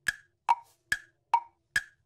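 Tick-tock sound effect of wood-block knocks alternating high and low in pitch, five even knocks about two and a half a second, a waiting cue while the answer is guessed.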